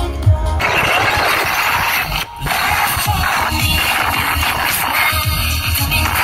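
Live pop music at a concert, loud and distorted as recorded on a phone; the thumping bass beat gives way about half a second in to a dense rushing wash, with a brief drop-out a little after two seconds, and the beat comes back near the end.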